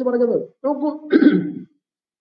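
A man speaking in short phrases, with a throat clearing about a second in.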